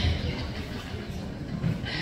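Low, steady rumble of background noise in a crowded hall, with no clear voices standing out.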